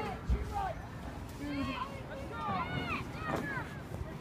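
Faint, scattered voices of spectators in open-air stands, overlapping, with a dull low thump near the start.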